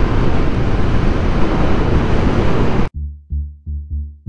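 Steady rush of wind and road noise on the microphone of a motorcycle being ridden at speed. About three seconds in it cuts off abruptly and electronic music with a pulsing bass beat takes over, about three beats a second.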